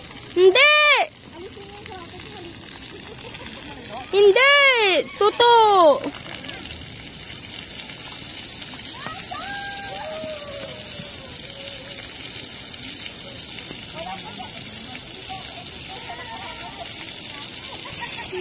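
Three loud, high-pitched shrieks, each rising then falling in pitch: one under a second in, then two close together at about four to six seconds. After them the splash-pad water jets spray with a steady hiss, with faint voices in the distance.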